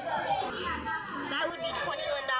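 Children talking indistinctly, several young voices overlapping in classroom chatter.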